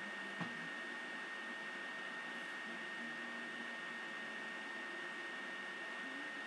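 Steady background hiss with a constant thin high whine running under it, and a single soft click about half a second in.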